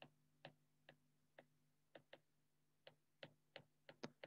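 Faint, irregularly spaced clicks of a stylus tapping on a tablet's glass screen during handwriting, about ten taps, over a faint steady low hum.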